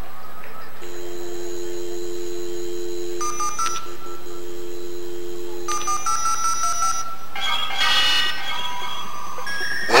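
Dial-up modem connecting: a steady telephone dial tone, then touch-tone dialing beeps, then the warbling, screeching modem handshake starting about seven seconds in.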